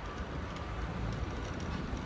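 Steady low rumble of wind on the microphone and tyre noise from an electric bicycle rolling along an asphalt cycle path at cruising speed.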